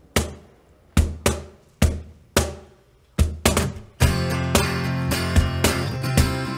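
A Meinl cajón plays a sparse opening beat of single strikes, each a deep thump with a sharp crack on top. About four seconds in, an acoustic guitar comes in strumming chords over the beat.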